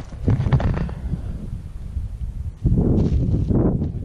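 Wind rumbling on an action camera's microphone, with a few knocks in the first second and a louder gust about three seconds in.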